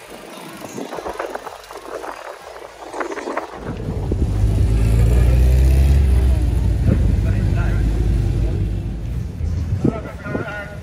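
A car engine running loud and steady at a start line, coming in about a third of the way through and holding to the end, over voices and crowd chatter.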